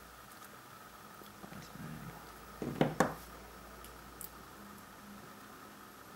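Two sharp metallic clicks close together about three seconds in, with a fainter click a second later, as small pliers work a contact pin into a PGA ZIF socket.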